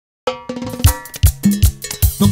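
Drum-and-percussion intro of a Latin dance song. A short silence is followed by a pitched hit that rings and fades, then a fill of four loud drum strikes in about a second, leading into the band.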